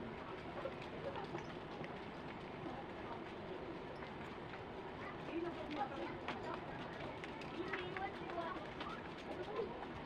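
Outdoor street ambience: faint distant voices and a few bird chirps over a steady background noise, with no loud event.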